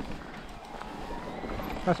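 Electric mountain bike rolling down a rocky dirt trail: steady rumble of tyres and frame with wind on the microphone, and a sharp click at the start.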